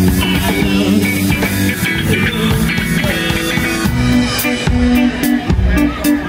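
A live rock band playing loud: electric guitar over bass guitar and a drum kit, with steady drum strokes.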